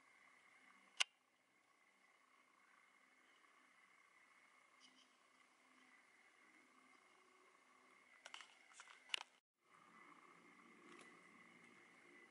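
Near silence: faint steady background hiss, broken by one sharp click about a second in and a few faint clicks near the end, then a brief dropout.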